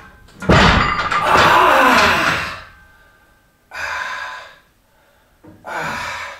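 A loaded bar of a strength-training rack set down with a heavy thud about half a second in. It is followed by a long loud exhale lasting about two seconds and then two hard breaths: a lifter recovering after a near-maximal effort.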